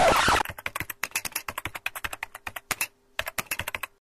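Computer keyboard typing sound effect: rapid, even key clicks that match the caption typing onto the screen, with a brief pause about three seconds in and a stop just before the end. It opens with a short, loud burst of noise.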